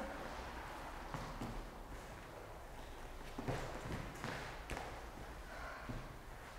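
Faint, scattered soft knocks and rustles of people shifting position on a foam gym mat, a handful of light thuds from hands and shoes between stretches.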